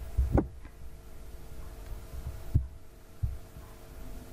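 A steady faint hum with three dull low thumps, the first and strongest about half a second in.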